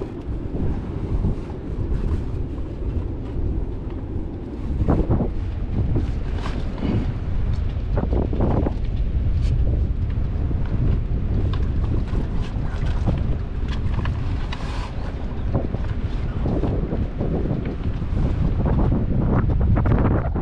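Wind buffeting the microphone with a steady low rumble, broken by a few short knocks and rustles as a rolled sail is handled and lowered into an inflatable dinghy.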